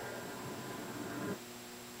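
Steady hiss and hum of a handheld audio recorder's playback, a little louder for the first second and a half and then dropping. The investigator takes a faint sound in it for a female voice answering 'yes' (an EVP).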